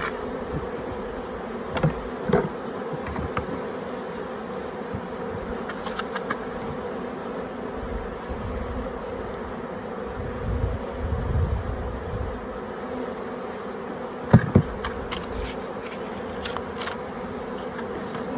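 Honeybees buzzing steadily around an open hive, with a few short knocks from wooden frames being handled in the brood box, about two seconds in and again near the end.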